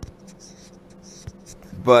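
Faint rustling and small ticks of a camera being handled and moved by hand, over a low steady hum.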